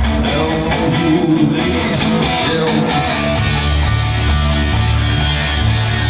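Live rock band playing an instrumental stretch without vocals: electric guitar over bass and drums.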